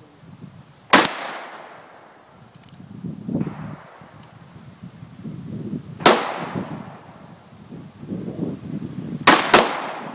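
Taurus .357 Magnum revolver fired four times: single shots about a second in and about six seconds in, then two quick shots close together near the end. Each shot is a loud, sharp crack followed by a short echo.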